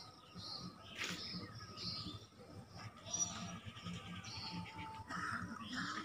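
Small birds chirping and calling, with many short high notes and whistles, and a brief sharp click about a second in.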